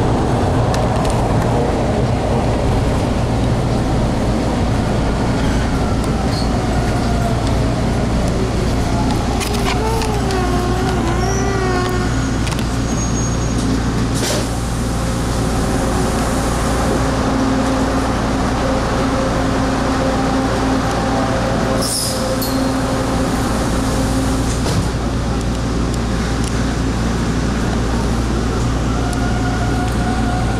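Inside a Bombardier T1 subway car coming into and along a station: the car's steady low hum and running noise, with a brief wavering whine about a third of the way in and a couple of sharp clicks.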